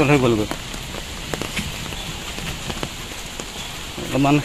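Rain falling: an even hiss with a few sharp taps scattered through it.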